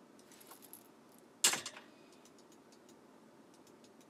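A sudden sharp clatter of small hard objects about a second and a half in, dying away quickly, with light rustling before it and a few faint clicks after.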